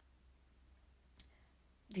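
Quiet room with a single short, sharp click a little over a second in; a woman starts speaking right at the end.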